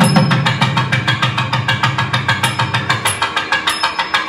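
Two thavil drums played in a fast, dense run of strokes, about ten a second, over a low continuous hum that cuts off at the end. No nagaswaram melody is heard.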